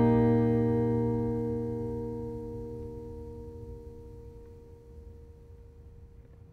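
1943 Martin D-28 dreadnought acoustic guitar: a strummed chord ringing out and slowly fading away, the last of it dying to a faint ring near the end.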